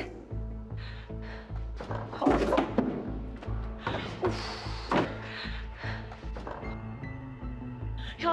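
Tense background music with a low, pulsing beat, over several thumps of a locked door being shoved and rattled, about two seconds in and again around four and five seconds.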